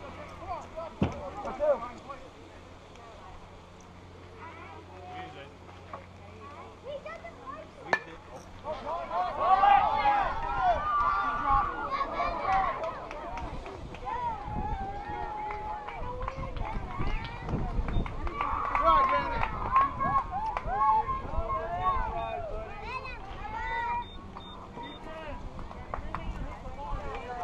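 Several voices calling and cheering over one another, getting louder about ten seconds in, with a low rumble of wind on the microphone.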